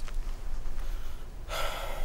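A man's audible breath, a sigh-like exhale about half a second long near the end, over a low steady room hum.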